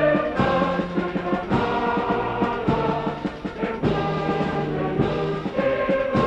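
Orchestral music with brass, marked by a slow, even drum beat about once a second.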